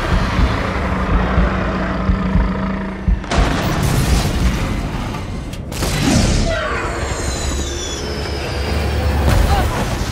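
Action-film sound mix: deep booms and jet engine noise under dramatic orchestral score, with sudden crashes about three and a half and six seconds in, followed by a falling whine.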